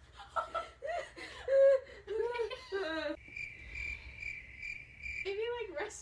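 Girls laughing and giggling with short vocal bursts, then a thin, high, steady tone swelling about three times a second for about two seconds, before the laughing sounds start again near the end.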